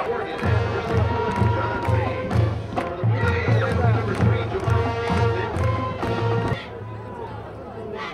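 Background music with a steady bass beat, about two beats a second, and a voice over it; it cuts off suddenly about six and a half seconds in. What is left is quieter crowd noise.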